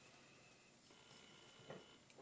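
Near silence: quiet room tone, with one faint brief sound near the end.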